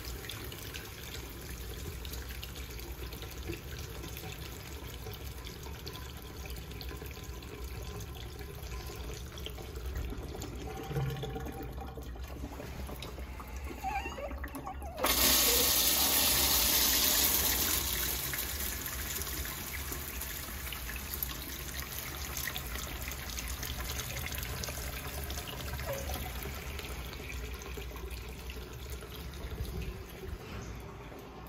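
An old porcelain wall urinal flushing. Steady running water at first, then about halfway a sudden loud rush as water sprays from the spreader at the top of the bowl. The rush eases after a few seconds and settles to water running down the china.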